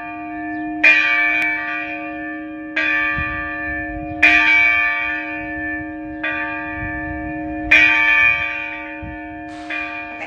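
A single church bell tolling, six strokes about every one and a half to two seconds, alternately harder and softer. Its low hum note rings on steadily between the strokes.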